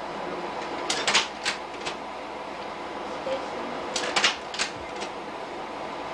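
Slide projector changing slides: two short clusters of mechanical clicks and clunks, about a second in and again about four seconds in, over a steady low hiss.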